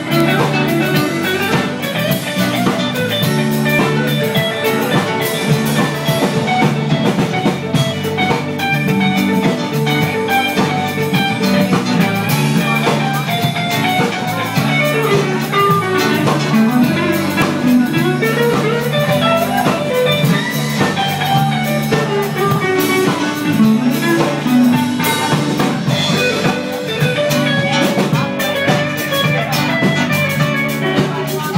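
Live blues-rock band playing an instrumental break, a bending guitar lead over drum kit and bass.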